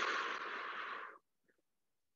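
A man's long, steady exhale, a breathy rush of air that ends a little over a second in, breathing out while holding the core tight.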